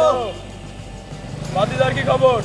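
A man singing over background music: one drawn-out phrase fades away just after the start, and after a pause of about a second another begins.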